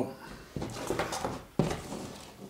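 Soft handling noises, two light knocks or rustles about a second apart, each fading quickly.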